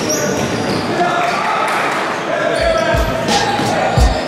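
A basketball bouncing on a hardwood gym floor during a drill, with a couple of heavier thumps about three seconds in, under the voices of players and coaches in a large gym hall.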